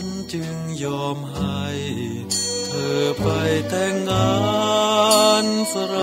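Thai popular song (เพลงไทยสากล): a male singer over instrumental accompaniment with a steady bass line. A sung line comes in about three seconds in.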